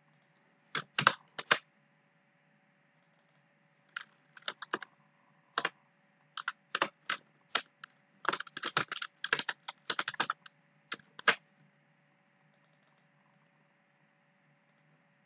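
Computer keyboard typing in irregular bursts of keystrokes with pauses between, the densest run about eight to ten seconds in, over a faint steady hum.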